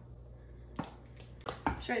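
A few short plastic clicks and a knock from a mayonnaise squeeze bottle being handled, its flip-top cap closed and the bottle set down on the counter, starting under a second in.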